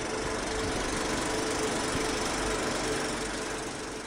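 Old film projector running as a sound effect: a steady mechanical whirr and clatter with a faint hum, starting to fade near the end.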